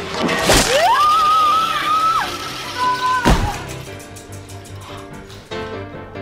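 A person in a flying harness yanked across a gym: a sudden whoosh, then a high scream that rises and holds for about a second and a half, and a loud crash about three seconds in. Film background music runs underneath.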